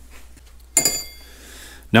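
A single bright metallic clink of a steel hand wrench against other metal tools, about three-quarters of a second in, ringing briefly before it dies away.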